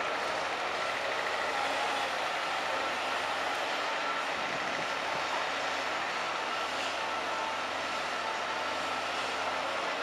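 Caterpillar 323D hydraulic excavator working, its diesel engine running steadily with faint steady tones over it as it swings the emptied bucket back from the truck and digs into the soil.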